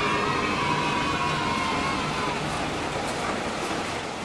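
CC201 diesel locomotive of the Logawa train sounding its horn as it comes through at speed, the pitch sliding slightly lower before the horn fades about two seconds in, over the steady rumble of the train passing.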